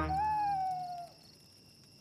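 A cartoon owl's single long hoot, falling slightly in pitch and fading out about a second in.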